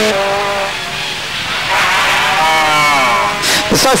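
Rally car engine revving hard as the car accelerates away, the engine note fading briefly and then climbing in pitch through the gears.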